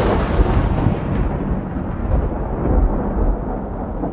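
A long rolling rumble like thunder. Its hiss fades away over the first three seconds while a deep rumble carries on underneath.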